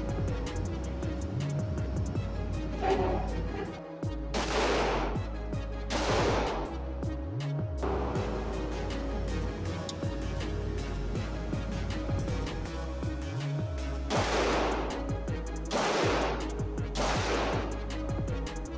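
Springfield Armory Prodigy 9mm pistol fired slowly, about five shots spaced one to eight seconds apart, each ringing off the walls of an indoor range. Background electronic music with a steady bass runs underneath.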